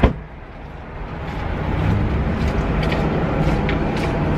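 Street traffic: the low rumble of cars on the road builds over the first second or two and then runs steadily, with a few faint clicks later on.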